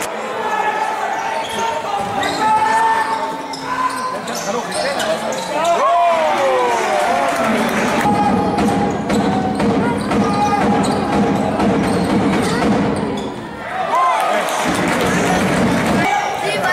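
A basketball being dribbled on a hardwood court, with repeated sharp bounces, under players' shouts and chatter echoing in a sports hall.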